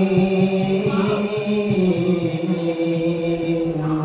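Male nasyid singing, unaccompanied, through a microphone: long drawn-out held notes that step down in pitch about halfway through and again near the end.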